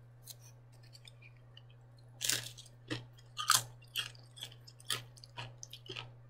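A tortilla chip being chewed close to the microphone. After about two quiet seconds come crisp crunches, about two a second.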